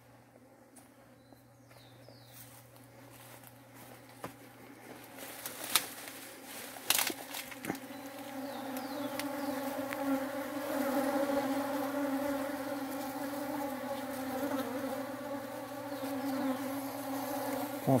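Honeybees buzzing as they forage on open pitaya (dragon fruit) flowers: a steady, many-bee hum, faint at first, then growing louder from about four seconds in. A couple of brief clicks come about six and seven seconds in.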